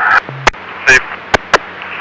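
A short pause in police radio traffic, broken by a brief low hum and three sharp clicks, with one short spoken word about a second in.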